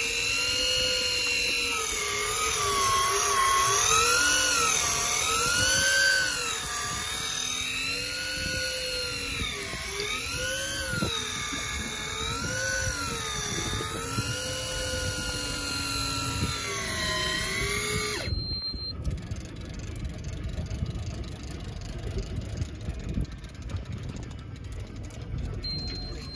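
Electric deep-drop fishing reel winding in a blueline tilefish. Its motor whine wavers up and down in pitch as it labours against the load, an effort that points to a decent-sized fish. The whine stops abruptly about 18 seconds in, leaving wind and water noise.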